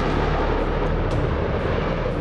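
F-22 Raptor fighter jet in flight, its engines making a steady rushing noise.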